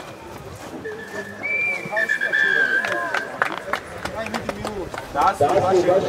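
Rugby players' voices calling out on the pitch, with several long, steady whistle tones in the first half and a few sharp knocks about three seconds in. The shouting grows louder near the end.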